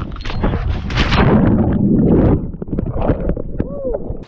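Seawater splashing and churning right against a hand-held action camera as a man plunges into the sea, loudest about a second in and lasting over a second, with a short vocal exclamation near the end.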